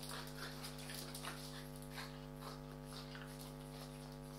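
Two French bulldog puppies making short, irregular dog sounds, several a second and thinning out after about two seconds, as they tussle over a rubber chicken toy. A steady electrical hum runs underneath.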